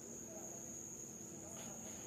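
A faint, steady high-pitched whine held on one pitch without a break, over a low hum.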